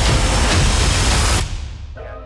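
Dramatic soundtrack music ending in a loud, noisy, rumbling swell that cuts off about one and a half seconds in and fades away.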